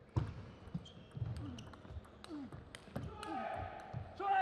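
Table tennis ball struck back and forth by rubber-faced rackets and bouncing on the table in a fast rally: a run of sharp clicks, several a second.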